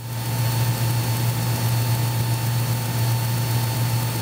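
Mooney M20K's engine and propeller droning steadily in flight, heard from inside the cockpit as an even low hum with faint steady higher tones.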